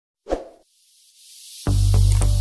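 Intro sound effects: a single short pop just after the start, a faint rising hiss, then electronic music with a deep bass and a steady beat starting shortly before the end.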